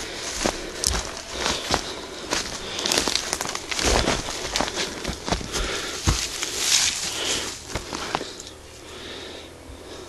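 Rustling and crackling of dry leaves, bracken and twigs on a forest floor, with many scattered sharp snaps, from footsteps moving through the undergrowth; it falls quieter in the last second or two.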